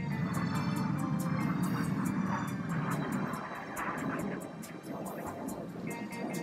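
Red Arrows BAE Hawk jets flying past, a dense rushing jet noise that swells at the start and eases after about three and a half seconds. Background music with a steady beat plays over it.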